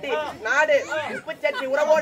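Speech only: people talking in Tamil, with several voices overlapping.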